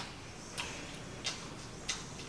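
A man chewing food loudly with his mouth open, a sharp smack about every two-thirds of a second.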